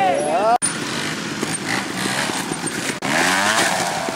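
Trial motorcycle engine revving in quick throttle blips, the pitch rising and falling, broken by abrupt cuts about half a second in and again near three seconds.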